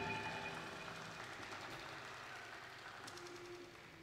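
A rock band's final chord ringing out through the amplifiers and fading away slowly, with a faint low held tone coming in near the end.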